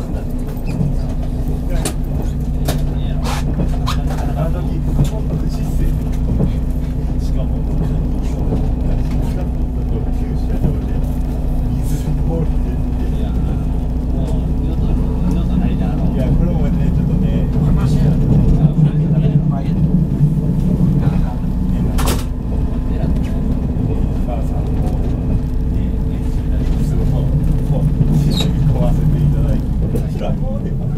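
Interior running noise of a JR 183 series electric train under way: a steady low rumble with a constant hum, growing a little louder around the middle, and occasional sharp clicks, one strong one about 22 seconds in.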